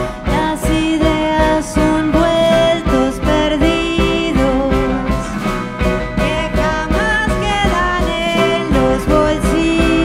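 A live band playing an instrumental passage between sung verses: electric guitar and piano over drums, with a melodic lead line moving above them.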